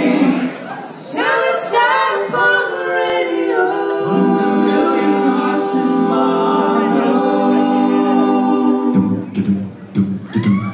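Six male voices singing a cappella in close harmony, with sustained chords and a brief break in the first second. A lower bass line comes in about nine seconds in.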